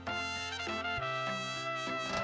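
Background music led by a brass melody over a sustained bass line.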